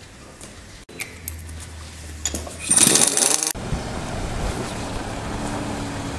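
A low hum with a few clicks, then a loud noisy burst of under a second about three seconds in that cuts off sharply. From there on, a 2009 Nissan Qashqai's engine runs steadily as the car moves slowly over snow.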